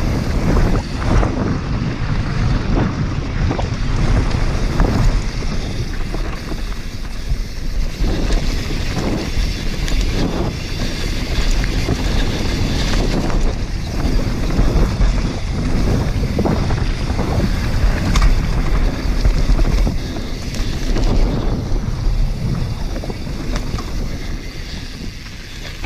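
YT Capra enduro mountain bike descending a dirt trail at speed: tyres rolling over loose dirt with frequent rattles and knocks from the bike over bumps. Wind rumbles on the microphone.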